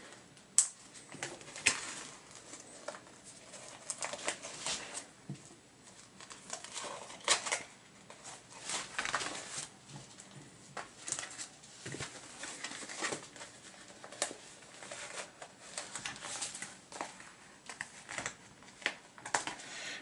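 Scattered plastic clicks, taps and rustling from BCW Snap-it comic display panels and their small plastic snaps being handled and pressed together on a tabletop, a few clicks louder than the rest.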